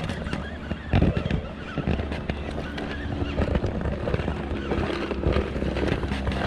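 A small boat's motor humming steadily, with scattered knocks and a loud thump about a second in.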